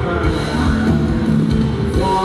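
Band music for a Thai ramwong dance song, with electric guitar and a drum kit keeping a steady beat.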